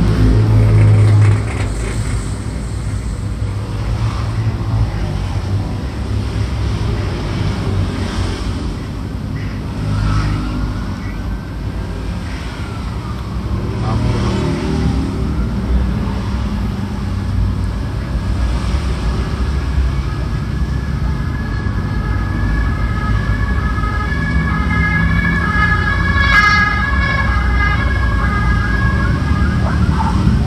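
A siren sounds over a steady low rumble. About ten seconds in it makes a slow rising-and-falling sweep, and from about halfway it holds a steady high tone.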